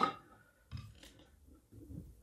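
Faint clicks and light scratches of a pen being pulled from a plastic desk pen holder and put to paper.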